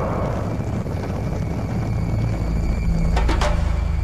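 Low, steady rumble of a V-2 rocket's liquid-fuel engine in flight, swelling a little near the end.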